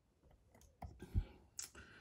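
Steel tension tool and dimple pick being fitted into the keyway of a Mul-T-Lock Integrator cylinder clamped in a vise: a run of small metallic clicks and scrapes, with one duller knock a little past halfway.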